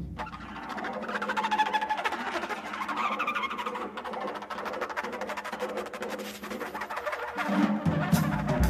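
Free-improvised duo music led by dense, rapid taps and clicks on drums and small percussion, with a few short held pitched tones threading through. Deeper drum strokes come in near the end.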